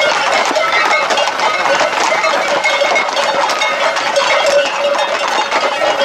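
Hooves of a group of Camargue horses clattering on an asphalt road at a walk, many overlapping hoofbeats, mixed with the voices of people around them.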